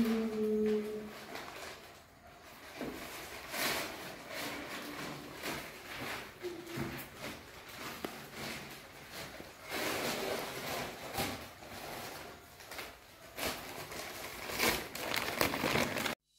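Gift wrapping being handled as a present is unpacked: irregular crinkling and rustling of wrapping on clothing.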